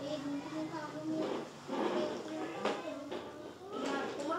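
Indistinct children's voices chattering in a classroom, with a few brief clicks or rustles.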